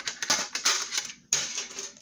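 Metal Pokémon card tins being picked up and moved, clattering and rattling against each other, with a sharp clatter about a second and a half in.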